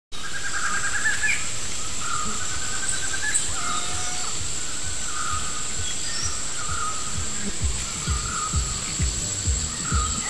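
Jungle ambience: a steady high-pitched insect drone and repeated short bird chirps and trills. About seven and a half seconds in, a kick-drum beat fades in at about two beats a second.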